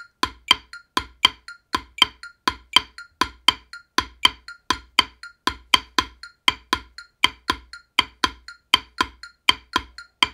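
Wooden drumsticks striking a rubber practice pad in a steady 6/8 jig-time pattern. The strokes come about four a second, with a stronger stroke on each beat roughly every three-quarters of a second.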